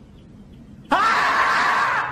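The screaming-marmot meme sound: one long, loud scream that starts about a second in, its pitch sliding up at the onset, after a second of faint background noise.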